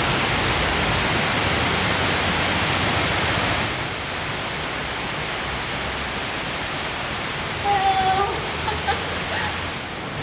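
Steady rushing outdoor noise, like wind or running water, a little louder for the first few seconds and then slightly quieter.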